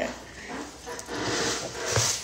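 Breathy drawing of air as a person takes a long pull on a lit blunt, a soft rushing breath that swells about a second in and runs to the end.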